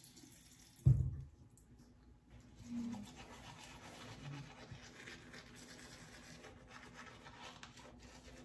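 A single loud thump about a second in, then a manual toothbrush scrubbing back and forth across the teeth.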